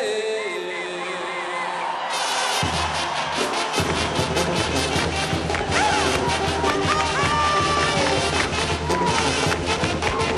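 A sung verse ends over crowd cheering, then a brass band starts up dance music. Bass and percussion come in about three seconds in, followed by trumpets and trombones playing full out.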